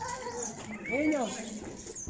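Faint voices, with one short rising-and-falling vocal call about a second in.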